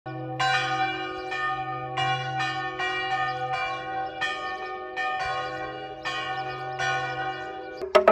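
Several church bells rung by hand in an irregular pattern of about a dozen strikes. Each strike leaves a long ringing tone at its own pitch, overlapping the ones before.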